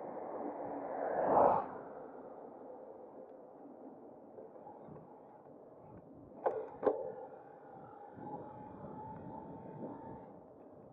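Wind and tyre noise from an e-bike riding down a country lane, with an oncoming car swelling past about a second and a half in. Two sharp clicks follow in the middle, then a faint steady whine.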